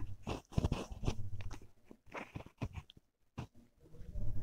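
A hand kneading and pressing a thick, cooled sweet dough against the bottom of a steel kadhai. It makes irregular soft squishes, scrapes and clicks, with a short pause a little after three seconds.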